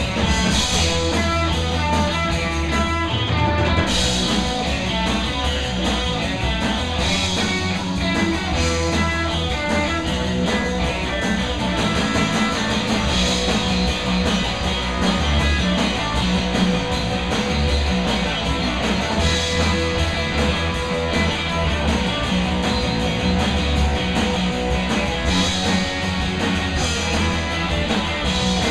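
Live rock band playing: electric guitar and bass guitar over a drum kit, with cymbal crashes every few seconds.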